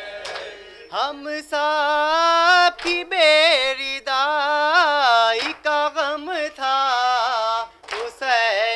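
A man's solo voice reciting a noha, a Shia lament, unaccompanied into a microphone. It comes in about a second in with long, wavering, ornamented notes and brief breaks between phrases.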